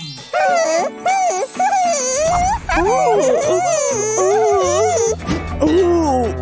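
High-pitched wordless cartoon voice sounds, swooping up and down in pitch in a string of short phrases, over background music.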